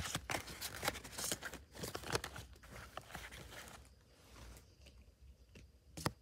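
Foil booster-pack wrapper crinkling and tearing as it is opened, a quick run of crackles over the first three seconds, fading to faint rustling.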